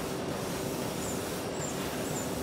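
Steady running noise of a broccoli packing-line conveyor and its machinery, with a faint steady hum.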